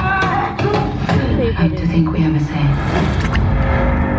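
A film soundtrack over cinema loudspeakers: voices and music over a heavy, continuous low rumble.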